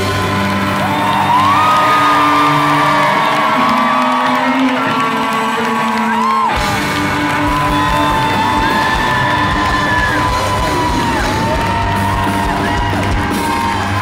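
Live pop-rock band playing with acoustic guitar, drums, keyboard, tambourine and a lead vocal in long held notes. The bass and drums drop away for a couple of seconds, and the full band comes back in about six and a half seconds in.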